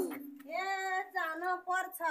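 A high woman's voice singing a Nepali Deusi Bhailo song without accompaniment, in long held, wavering notes that begin about half a second in, after the drumming has just stopped.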